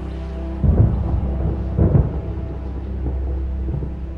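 Thunder rumbling, with two loud surges about half a second and two seconds in, over a low, steady music drone.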